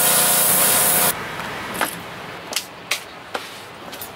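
Pressure washer jet blasting a painted wooden deck to strip off bubbled paint: a loud, steady spray hiss over a steady machine hum. It cuts off suddenly about a second in, leaving quiet background with a few faint clicks.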